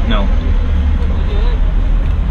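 Steady low rumble of a bus heard from inside the cabin, engine and road noise together, under a brief spoken word.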